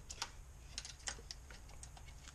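A few light, irregular clicks and taps of small metal parts being handled by hand at an engine's valve cover, about half a dozen over two seconds.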